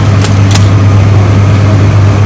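A loud, steady low hum, with two short clicks shortly after the start.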